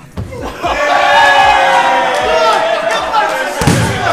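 Boxing arcade punch machine's punch ball struck with one hard punch near the end, a single heavy thump. Before it comes a loud, drawn-out shout lasting a couple of seconds.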